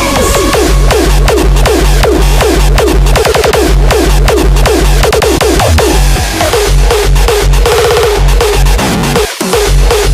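Raw hardstyle instrumental: a distorted kick drum hitting steadily about two and a half times a second, each hit with a falling pitched tail, with a short drop-out just before the end.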